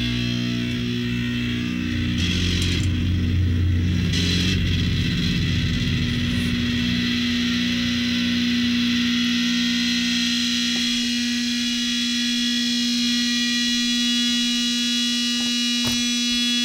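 Electric guitar amplifier droning: one steady held tone with hum, with some low rumble in the first few seconds and its upper overtones growing stronger toward the end, and no picked or strummed notes.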